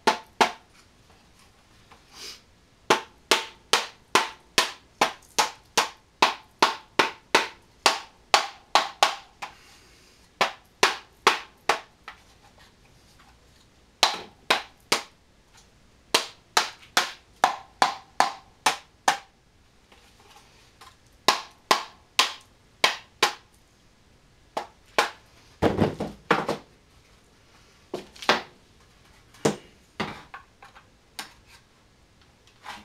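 Rubber mallet tapping a composite fuselage mold in runs of sharp knocks, about two a second, to work the cured fiberglass part loose from the mold. About 26 seconds in comes a single longer, deeper knock.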